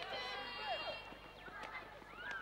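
Players' voices shouting and calling to each other across a hockey pitch, with one drawn-out call in the first second, and a few short knocks in between.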